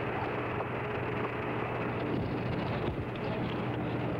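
Steady radio hiss with a low hum from the Apollo 14 air-to-ground voice link, an open channel between transmissions.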